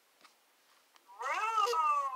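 A cat meowing once: one drawn-out meow starting about a second in, rising and then falling in pitch.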